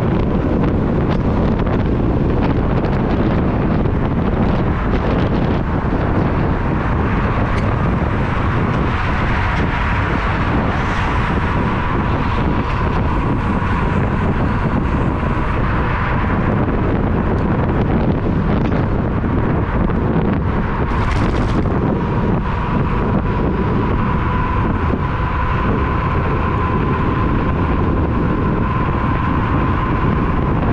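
Wind buffeting the microphone of a camera on a moving electric scooter: a dense, steady rumble. A thin, steady high whine runs underneath and grows a little louder in the second half.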